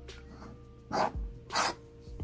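Two short breaths or sniffs through the nose, about half a second apart, over a faint steady hum.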